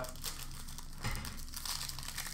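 Trading card pack wrapper crinkling and crackling as hands handle it.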